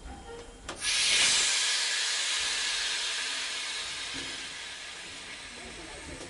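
A sudden loud hiss of noise starting about a second in, then slowly dying away over several seconds: a radio-drama sound effect.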